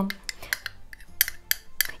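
A spoon scraping mustard out of a small glass bowl, with a few light clicks of metal against glass spread through the two seconds.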